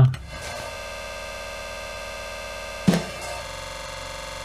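Drum-loop slices played back slowed right down in Bitwig Studio's slice mode, with the gaps between hits filled by a granular tail. The tail is a steady buzzing drone drawn from the end of a sample, broken by one drum hit near three seconds. Just after that hit the drone's tone changes as the granular formant setting is raised.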